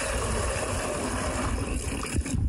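Worm compost tea poured in a steady stream from one plastic bucket into another, splashing into the liquid below.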